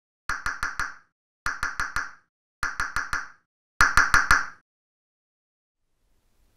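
A tapping sound effect laid over a transition: four bursts of four quick, ringing taps, a little over a second apart, with the last burst loudest.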